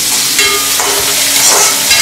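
Diced onions and green peas sizzling in hot oil in a metal kadhai, stirred with a perforated steel spatula.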